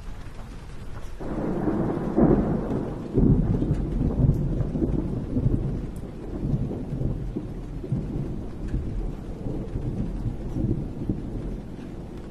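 Thunderstorm field recording: a roll of thunder breaks about a second in and rumbles on, fading slowly, over steady rain.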